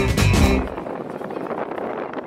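A live blues band (double bass, electric guitar, drums, vocals) ends its song on a final hit about half a second in. It gives way to a quieter, steady rush of wind on the microphone.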